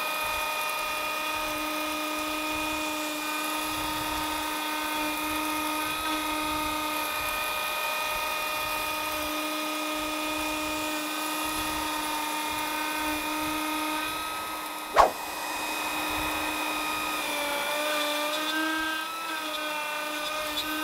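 Fox Alien trim router on a desktop CNC running at a steady high whine as its bit cuts a pocket in MDF. About three quarters of the way in comes a single sharp click, and the router then runs on cutting plywood with a 1/4-inch compression end mill, its pitch dipping and wavering slightly under the cut.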